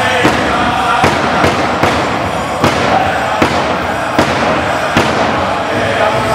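Large powwow drum struck in unison by a group of seated singers, keeping a steady beat a little faster than once a second for an Anishinaabe honor song, with the singers' voices under the drum.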